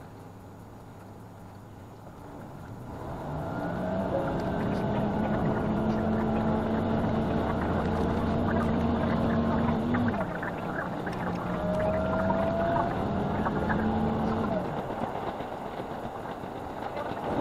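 Diesel railcar's engine throttling up as the train pulls away from a station, a steady drone that grows loud about three seconds in, eases off briefly around the middle and then carries on, with rail running noise underneath. The track is sped up five times.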